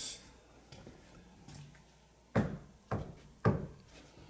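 Three knocks, a hand rapping on a hard surface, evenly spaced about half a second apart, given as a knocking pattern to copy.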